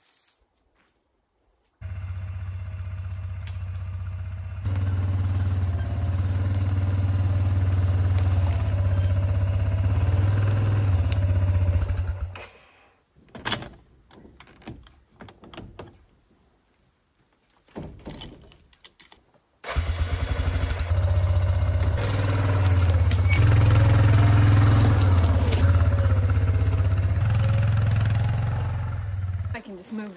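ATV engine running at low speed while towing a small camper into place, in two stretches with a quieter gap of several seconds between them. The engine note wavers up and down in the second stretch.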